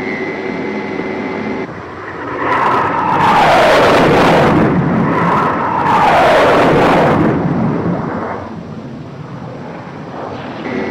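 Film jet-engine sound effects. A steady high whine cuts off after about a second and a half, then two loud swells of jet noise follow a couple of seconds apart, each sweeping down in pitch, before the sound settles to a lower rumble.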